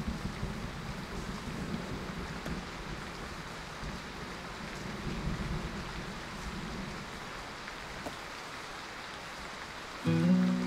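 Steady, even background hiss, like falling rain.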